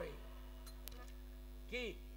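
A steady electrical mains hum through the microphone in a gap between a man's vocal phrases, with one short voiced syllable near the end.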